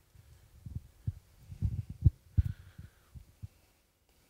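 Irregular dull low thumps and bumps picked up by a handheld microphone as the person holding it moves, loudest about two seconds in.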